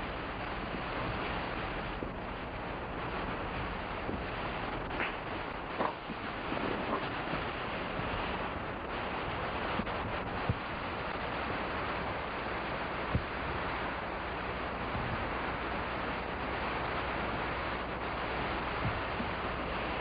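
Heavy rain falling in a rainstorm: a constant, even hiss, with a few faint knocks and scrapes.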